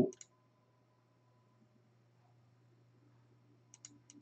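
Computer mouse clicks: one just after the start and a quick run of three or four near the end, over a faint steady low hum.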